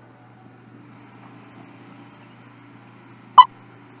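Film countdown leader beep: a single short, sharp beep about three and a half seconds in, over a low steady hum.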